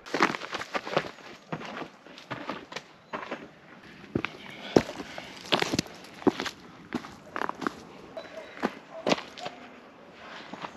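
Footsteps of boots on a stony dirt path strewn with dry leaves, coming as irregular short scuffs and crunches.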